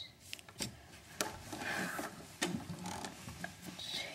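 Small plastic LEGO minifigure parts being handled and fitted together by hand: several sharp clicks, the strongest about a second and two and a half seconds in, among rubbing and handling noise.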